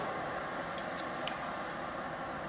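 Steady rushing air noise from an indoor shooting range's ventilation system, with a few faint ticks about a second in.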